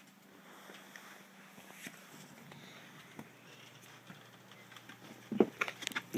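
Soft scuffling and rustling of a cat wrestling a catnip toy on carpet, with small scattered ticks. Near the end come a few loud, sudden knocks.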